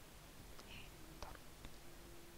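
Near silence: the recording's steady background hiss, with a few faint clicks.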